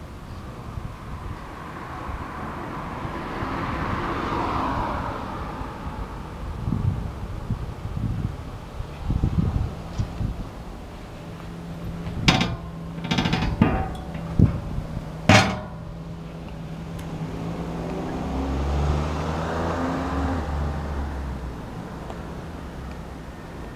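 Road vehicles passing by twice, swelling and fading, with a few sharp knocks in the middle.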